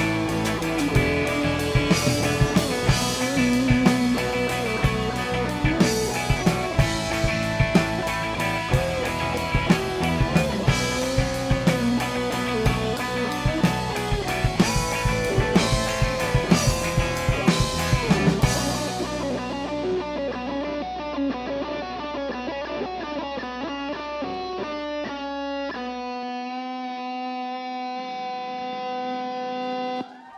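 Live rock band with an electric guitar playing a lead line of bent notes over bass and a drum kit. About two-thirds of the way through the drums stop and the band's final chord rings out, the bass dropping away a few seconds before the end while the guitar notes hold.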